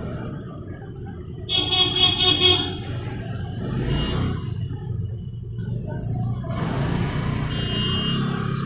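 Street traffic rumbling steadily, with a vehicle horn honking in a quick run of toots for about a second, starting about one and a half seconds in; this is the loudest sound. Shorter, fainter horn beeps come about four seconds in and near the end.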